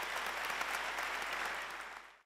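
Audience applauding: dense, steady clapping from a large seated crowd, fading away near the end.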